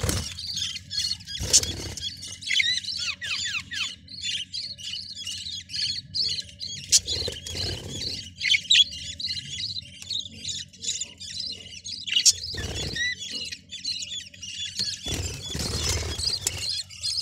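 Budgerigars chattering: a continuous stream of rapid high chirps and squawks, with a few quick downward-gliding calls about three seconds in. Several dull bumps and rustles of handling break in every few seconds.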